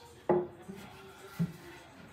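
Wooden table parts knocking together during assembly: a loud knock about a third of a second in, with a brief ring after it, and a lighter knock a second later.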